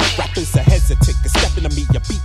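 A 1990s boom-bap hip hop track: a rapper's voice over a drum beat and a deep, steady bass line.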